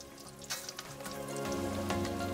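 Beer-battered cod frying in hot vegetable oil, sizzling and crackling, over background music. The sizzle grows louder about halfway through as more battered pieces go into the oil.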